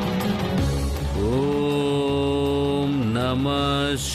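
A chanted mantra over a low musical drone. A single voice glides up into a long held note about a second in, dips briefly near three seconds and then holds again.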